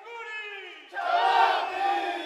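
A sikuris troupe's group shout of many voices as their panpipe-and-drum piece ends: a falling cry first, then a loud shout swelling about a second in.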